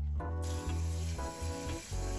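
Background music with a steady watery hiss that starts about half a second in, from water in a steel rice pot.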